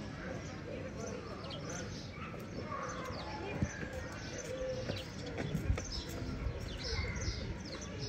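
Indistinct chatter of people mixed with scattered high bird chirps, with two light knocks, one about three and a half seconds in and one near six seconds.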